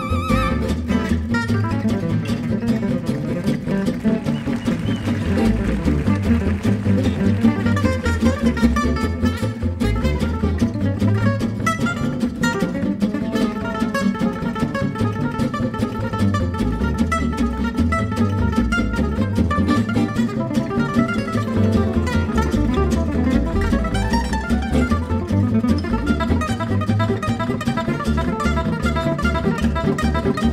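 Gypsy jazz band playing live: a lead acoustic guitar soloing over a steady strummed rhythm accompaniment.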